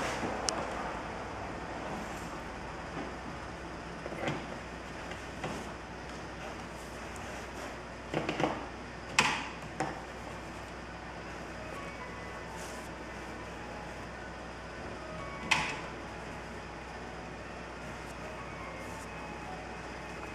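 A wide flat watercolour brush scrubbing in the paint palette and stroking across paper, giving a handful of short, soft swishes, the loudest about nine and sixteen seconds in, over a steady background hiss.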